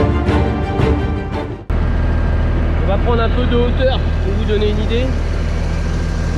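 Background music until nearly two seconds in, when it cuts off abruptly to the steady running of a Massey Ferguson tractor's engine heard from the cab.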